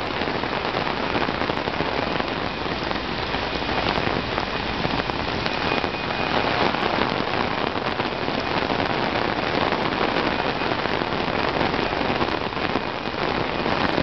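Heavy rain falling on a street, heard from under an umbrella: a dense, steady hiss.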